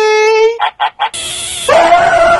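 A man's loud, held shout that stops about half a second in, followed by three short yelps, then a loud rough scream near the end.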